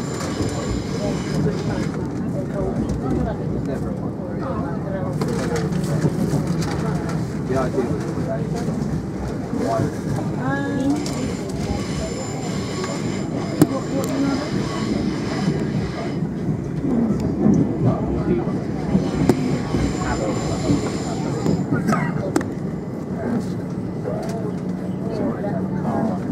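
Passenger train running, heard from inside the carriage: a steady rumble of wheels on the track, with people's voices in the background.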